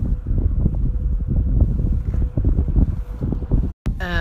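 Wind buffeting the phone's microphone: a loud, gusting low rumble that drops out abruptly for a moment just before the end.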